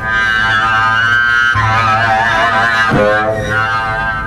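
Contrabass bowed sul ponticello, close to the bridge, giving a glassy, scary tone full of high overtones over a steady low note. The sound shifts about a second and a half in and again near three seconds.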